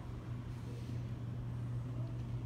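A steady low hum over a faint, even background hiss.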